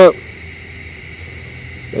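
TIG welding arc burning at 55 amps on 2-inch Schedule 10 stainless steel pipe, a weak arc: a quiet, steady hiss with a faint low hum.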